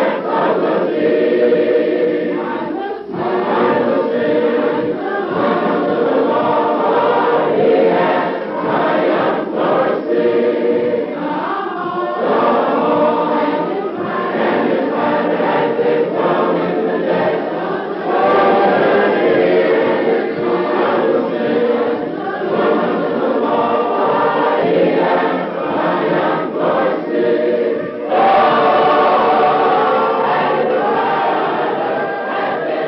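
A choir singing a hymn in long, held phrases, with short breaths between phrases.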